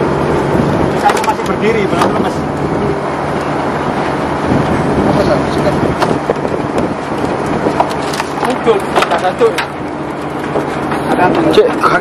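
A fishing boat's engine running steadily at sea, with scattered knocks on the boat and brief bits of voices.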